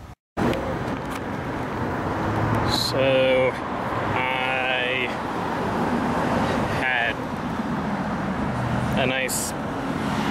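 Street traffic noise from passing cars, a steady rush with a low hum. It comes in after a moment of silence just after the start. A few brief pitched sounds stand out about three, four and a half, seven and nine seconds in.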